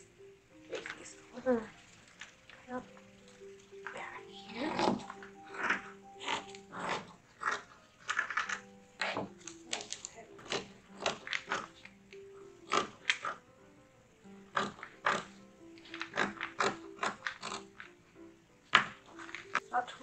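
Soft background music plays under repeated short snips and rustles of cotton fabric and paper pattern pieces being cut and handled with fabric scissors.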